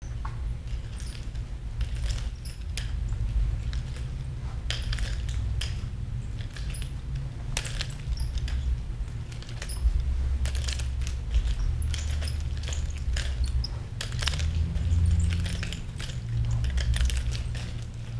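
Nunchaku being spun in wrist rolls and tossed and caught: irregular sharp clicks and clacks of the sticks against the hands, over a steady low rumble.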